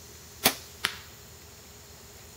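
A compound bow shot off a three-finger hooker release: a sharp snap of the string about half a second in, then a shorter crack about 0.4 s later as the arrow strikes the target.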